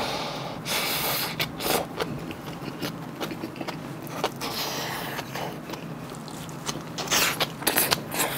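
Close-up eating sounds of rice and kimchi: wet chewing and mouth clicks with crunching of firm salted napa cabbage, busiest about a second in and again near the end as another bite goes in.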